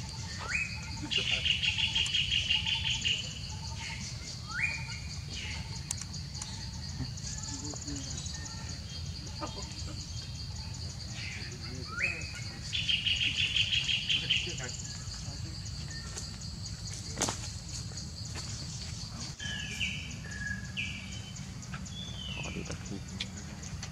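Steady high insect drone with a loud trilling call twice, about eleven seconds apart: a quick rising note, then a rapid trill lasting about two seconds. A single sharp click comes near the end.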